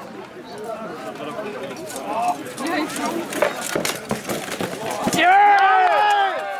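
Sharp clanks of steel swords striking plate armour in a run of quick blows during an armoured knight fight, over spectators' chatter, then a loud shout near the end.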